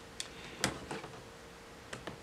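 About four light, sharp plastic clicks and taps of acrylic quilting rulers and a rotary cutter being handled on a cutting mat, as a second ruler is picked up to set against the first.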